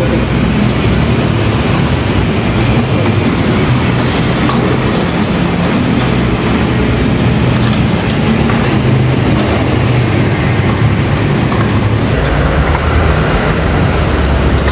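Loud, steady mechanical rumble with a low hum under a wide hiss, as from machinery running in the workshop.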